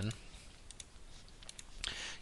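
A few faint computer mouse clicks.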